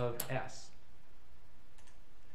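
A man's voice finishes a short phrase, then a low steady hum with a few faint clicks at the computer.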